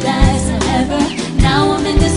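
Live pop band performance: a woman singing lead into a microphone over drums and bass.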